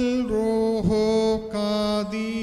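A single voice chanting a West Syriac liturgical melody of the Holy Qurbana. It holds long notes that slide into new pitches, with a dip and a change of note a little under a second in.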